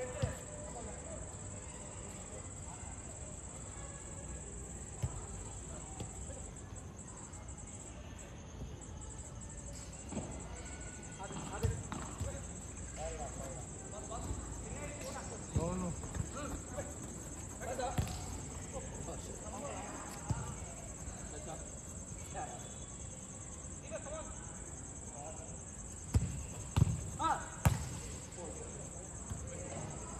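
Football being kicked about on an artificial-turf pitch: dull thuds of foot on ball every few seconds, with a quick cluster of louder kicks near the end. Players shout to each other in the distance between kicks.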